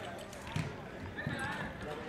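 Training-pitch ambience: faint players' voices with a few dull thuds of a football being kicked, the clearest about half a second in.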